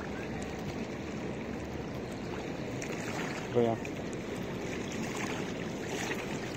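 Small waves lapping and washing steadily against a concrete-block shoreline, with a brief voice about three and a half seconds in.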